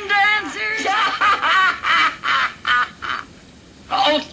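A woman's shrill, cackling laughter in quick short bursts, dying away about three seconds in.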